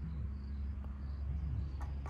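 Insects trilling steadily at a high pitch over a steady low rumble, with two sharp clicks near the end.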